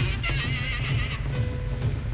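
Saxophone playing free jazz: a high, squealing line with a fast wavering vibrato, then a lower held note in the second half. Drums and cymbals play busily underneath.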